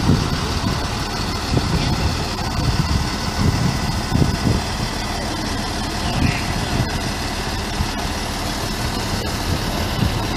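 Heavy truck engine idling steadily, with a continuous rush of noise over it.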